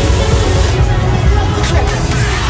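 Loud electronic dance music with a heavy bass.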